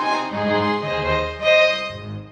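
Instrumental music between sung phrases: sustained held notes, string-like in tone, with a low bass part coming in shortly after the start.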